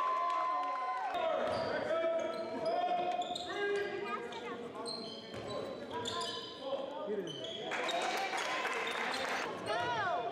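Basketball game on a hardwood gym floor: sneakers squeaking repeatedly, the ball bouncing, and players' voices calling out in a large echoing gym.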